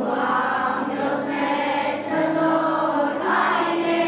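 A choir of schoolchildren and teenagers singing together in long, held notes at a steady volume.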